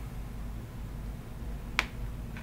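A single sharp click of a computer mouse button near the end, over a steady low hum.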